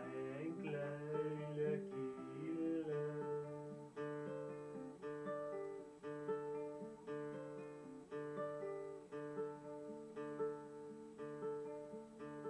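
Nylon-string classical guitar fingerpicked in a steady pattern of plucked notes, about two a second, an instrumental passage between sung lines. A man's sung phrase trails off over the guitar in the first couple of seconds.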